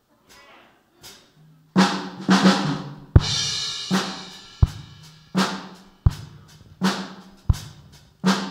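Live drum kit coming in about two seconds in. A few loud hits and a cymbal crash lead into a steady beat with a deep kick stroke about every second and a half.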